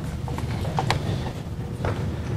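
A few scattered knocks and clicks of things being handled at a lectern, the sharpest about a second in and near the end, over a steady low room rumble.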